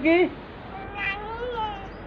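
The last of a man's sung word, then, about a second in, a high-pitched cry lasting about a second that rises briefly and then slides down in pitch.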